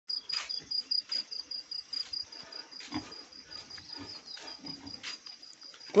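An insect chirping steadily in a high, even pulse of about five or six chirps a second, over faint irregular scuffs and knocks.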